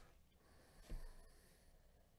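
Near silence: quiet room tone with one faint, soft thump about a second in.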